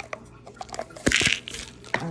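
Plastic prescription pill bottles handled, with small clicks and a short clatter about a second in as they are put down on the countertop.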